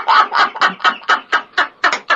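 Rapid, breathy laughter in short pulses about five or six a second, fading slightly toward the end.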